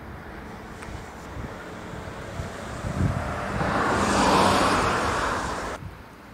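Wind rumbling on the microphone, with a passing vehicle whose noise swells to the loudest point a little past halfway and fades. The sound cuts off suddenly just before the end.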